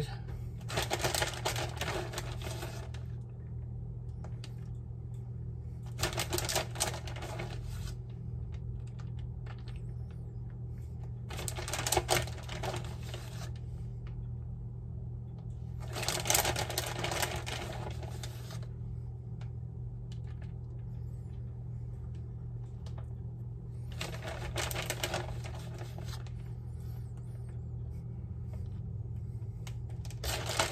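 Plastic bag of shredded mozzarella crinkling and rustling in five separate bursts of a second or two, as cheese is shaken out and sprinkled by hand over a pan, with a steady low hum underneath.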